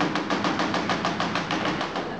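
A banana frozen hard in liquid nitrogen knocking rapidly against a wooden board, an even run of sharp knocks at about ten a second that stops near the end.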